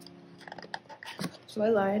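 Fingers scraping and tapping on a cardboard album box while trying to push its slide-out insert free: faint scattered clicks and rubs. A voice starts near the end and is the loudest sound, and the tail of soft piano background music is heard at the very start.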